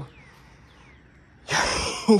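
A man's short, sharp breath close to the microphone, about a second and a half in, after a quiet stretch.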